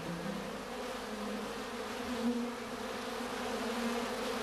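Honeybees buzzing around an open hive box while its frames are lifted out: a steady hum that wavers slightly in pitch.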